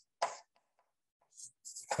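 A man's single short cough, followed by near quiet in a small room.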